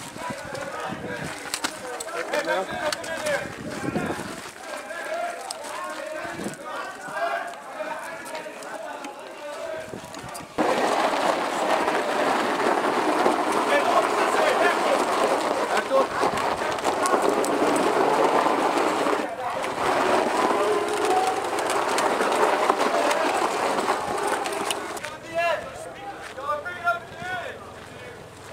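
Indistinct voices of several people talking over one another outdoors, with no clear words. The sound jumps suddenly louder and denser about ten seconds in.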